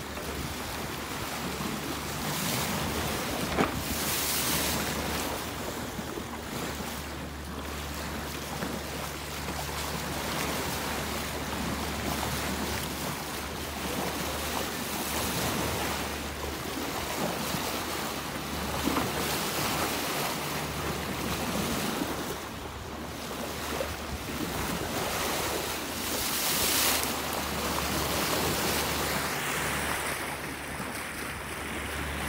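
Sea water rushing and splashing past a moving boat, with wind buffeting the microphone, over a steady low engine drone. A single sharp tick about three and a half seconds in.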